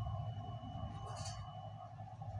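Aluminium foil tape being handled, with one short crinkle about a second in over a faint steady low hum.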